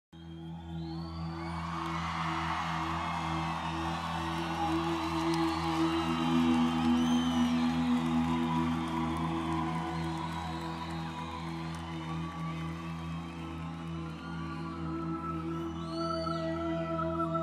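A live band's slow opening: sustained held chords that fade in over the first second and swell a little in the middle, with a haze of audience noise and a few high whistles over them.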